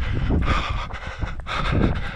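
A runner's heavy breathing, exhausted after a long climb, with wind buffeting the camera microphone.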